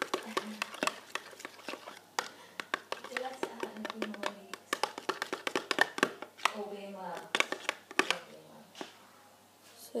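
Metal spoon clicking and scraping against a small bowl as it stirs a thick, gooey soap mixture, in many quick irregular clicks. A voice talks in the background at times.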